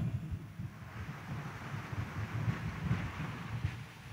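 Faint, steady background room noise: a low rumble with a light hiss, and no clear single event.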